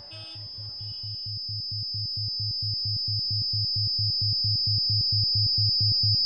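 Electronic background score fading in: a low pulsing bass beat about five times a second under a high sustained synth tone, growing slowly louder.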